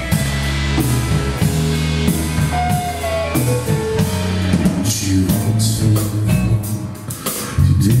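Live rock band playing an instrumental passage on electric guitars and drum kit, with a steady beat and a gliding guitar note a few seconds in. The band swells louder just before the vocal enters near the end.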